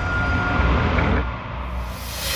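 Cinematic logo-sting sound effect: a deep rumbling boom that swells and fades, with a thin high tone that stops under a second in.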